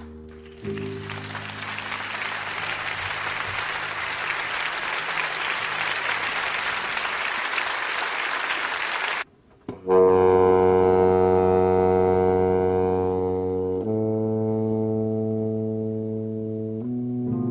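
Audience applause for about eight seconds, cut off abruptly. Then saxophones, a baritone saxophone among them, open the next number with long held chords, the chord changing once about four seconds later.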